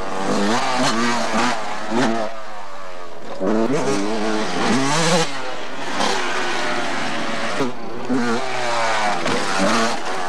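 Motocross dirt bike engines revving hard as the bikes ride past, their pitch rising and dropping again and again as the riders accelerate and shift.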